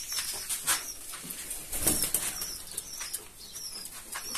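Pigeons flapping their wings in short, irregular flurries, the loudest about two seconds in.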